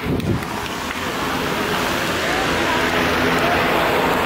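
Steady crowd hubbub of many indistinct voices, with a few distant voices rising faintly out of it in the second half.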